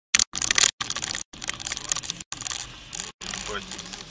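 Dashcam audio from inside a moving car: loud, crackly clattering noise with clicks, cut by several brief dropouts, and a short voice near the end.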